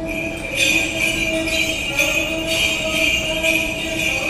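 Small bells jingling in a steady rhythm of about two shakes a second, over sustained held tones.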